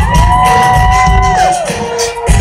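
Live rock band playing, recorded from the audience, with drums and bass under one long held high note that slides up at the start and falls away after about a second and a half.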